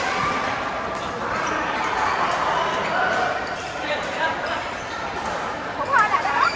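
Badminton play in a large hall: rackets hitting the shuttlecock and shoes squeaking on the court mats, with voices across the hall. Sharp squeaks come near the end.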